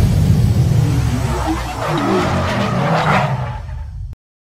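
Car sound effect for an animated logo: a deep engine rumble with tyre skid noise, fading out toward the end and then cutting off.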